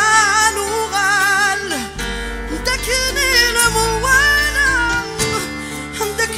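Live Kabyle song: a woman sings long, wavering held notes over acoustic guitar, with low bass notes underneath.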